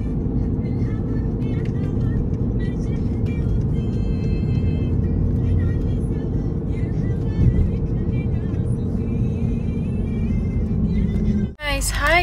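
Steady road and engine rumble inside a car's cabin at highway speed, with music and a singing voice playing over it. It cuts off abruptly just before the end.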